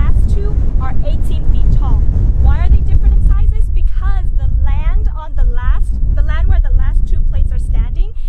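Strong wind buffeting the microphone: a loud, continuous low rumble that sits under a woman's excited talking and laughing.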